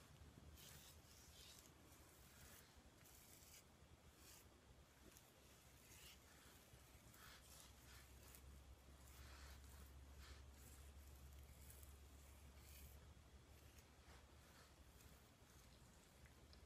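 Near silence: faint, irregular swishes of fingers working through curly hair, over a low steady hum that grows a little louder midway.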